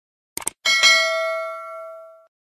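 Subscribe-button sound effect: a quick double mouse click, then a bell ding that rings and fades away over about a second and a half.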